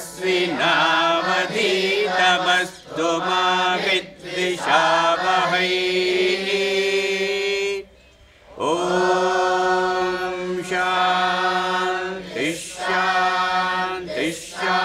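Melodic chanting of a mantra in long held notes, with a brief pause about eight seconds in.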